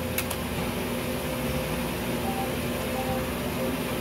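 Steady fan-like background hum while an electronic slot-style sweepstakes game spins its reels, with a quick double click just after the start and two faint short beeps from the game partway through.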